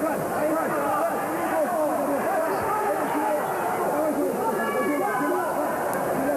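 Arena crowd shouting and talking over one another, a steady babble of many voices with no single clear speaker.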